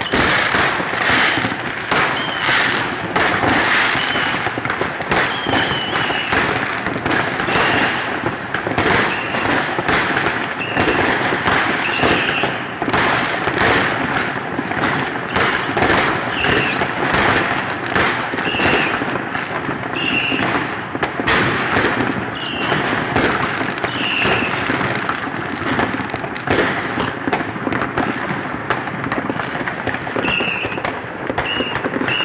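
Fireworks: many rockets bursting and crackling without a break, with short high whistles every second or two.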